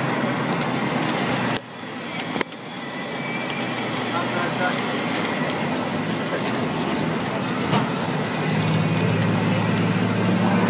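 Bus ride noise from inside a moving school bus: engine and road noise with indistinct chatter of other passengers. The sound breaks off abruptly about one and a half seconds in and again a moment later, and a steady low engine hum comes up near the end.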